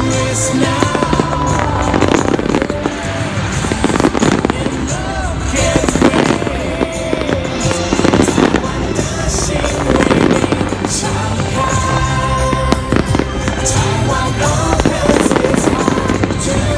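A fireworks display: shells bursting in quick succession throughout, with music playing at the same time.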